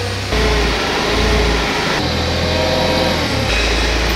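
Propane forklift engine running as the forklift drives across a concrete floor, its low drone stepping up and down a few times.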